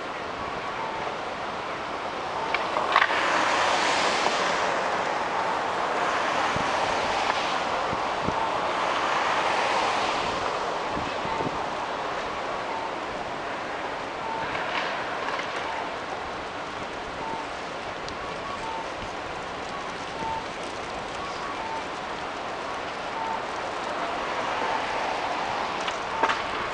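City street traffic at night: a steady hum of traffic with passing vehicles swelling louder several times, over a faint short electronic beep repeating a little faster than once a second.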